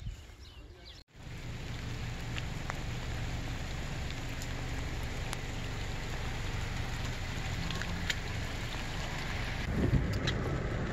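Steady rain falling on wet pavement: an even hiss with scattered sharper drop ticks. It starts abruptly about a second in.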